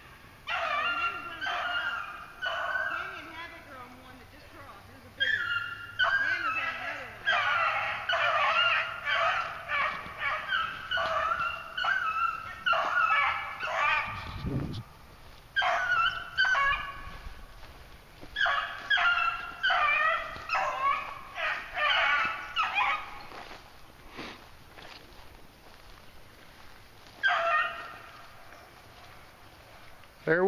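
Young beagles baying on a rabbit's trail in the brush, a long run of short, high, yelping cries that falls away about three-quarters of the way through, with one more short burst near the end. A brief low thump about halfway through.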